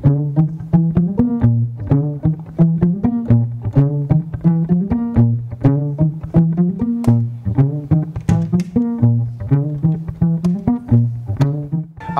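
Violin held like a guitar and plucked and strummed, quick percussive chords several times a second over a repeating bass line, in a funk groove.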